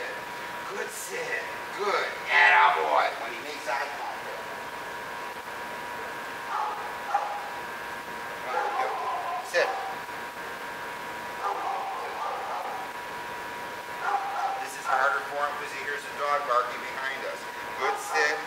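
A dog yipping and whining in short bursts, mixed with a man's distant, muffled voice, over a faint steady high hum.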